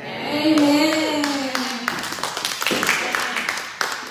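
A woman's voice over a microphone, with scattered hand claps from about a second in that go on almost to the end.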